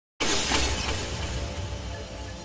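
Glass-shattering sound effect with a deep bass hit. It starts suddenly just after the start and fades away.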